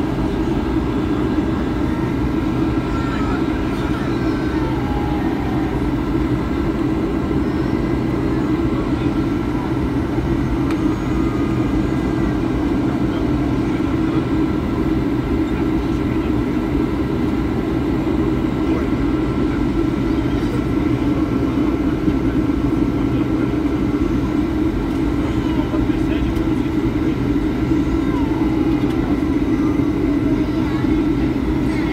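Steady, unchanging drone of a running vehicle, heard as even noise that is strongest low down.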